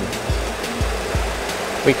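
Background music with a steady low beat, about two beats a second, over a steady cockpit hum.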